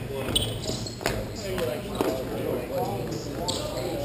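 Players' voices calling out across a large, echoing rink hall, with three sharp knocks of hockey sticks in the first two seconds.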